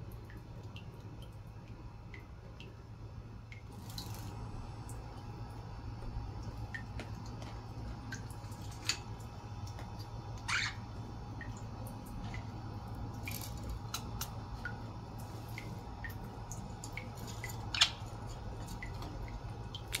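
Water dripping into a small plastic bird-bath dish in a budgie cage, in small irregular drips over a steady low hum, with a few louder sharp sounds mixed in.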